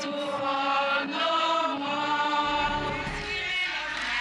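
Several voices singing a chant-like ushering song together in long held notes. A low rumble comes in a little past the middle.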